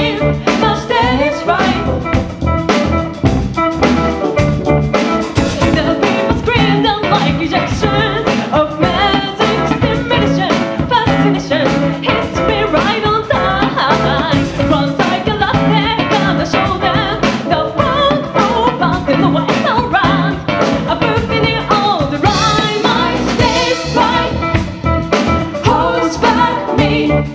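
A live band playing a song with several singers, over keyboard, electric guitar and drum kit.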